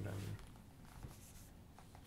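Two spoken words, then faint rustling of paper with a few soft clicks: the pages of a book being handled and turned.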